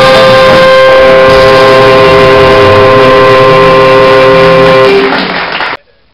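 Dixieland jazz band, trombone and trumpet in front, holding one long chord that ends about five seconds in; the sound then cuts off abruptly near the end.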